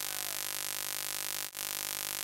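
Steady recording hiss with electrical hum and no clear field sound, broken by a brief dropout about one and a half seconds in, where the footage is edited.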